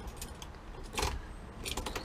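Car keys jingling and clicking in the ignition switch as the key is turned, with no starter or engine sound. The key is being turned the wrong way, so nothing comes on.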